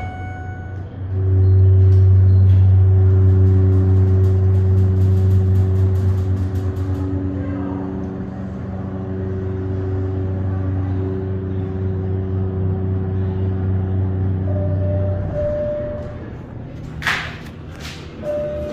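Schindler hydraulic elevator's pump motor running with a steady hum as the car rises, stopping about fifteen seconds in. A short chime tone follows and a sharp knock comes near the end.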